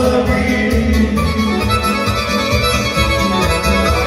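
Band playing kolo dance music, an accordion leading with held, stacked notes over a steady, pulsing bass beat.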